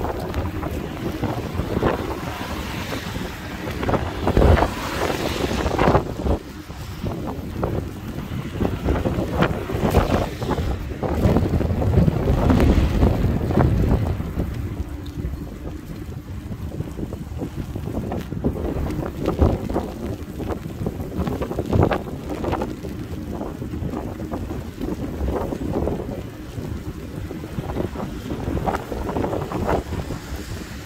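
Wind buffeting the microphone of a camera riding along on a moving e-bike: an uneven rumble that swells and falls, loudest about four to six seconds in and again around eleven to fourteen seconds.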